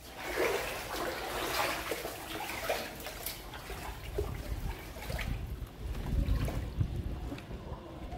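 Floodwater sloshing and splashing unevenly as someone wades through deep standing water, with a low rumble in the second half.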